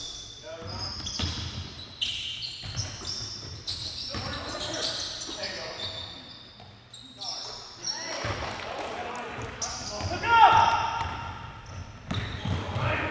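Sounds of a basketball game in a large gym: a basketball bouncing on the court floor, sneakers squeaking, and players' voices echoing in the hall. Near the end comes a loud, brief squeak that falls in pitch.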